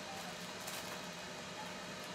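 Steady, even hiss with a faint hum from a countertop air-fryer grill's fan running while food cooks.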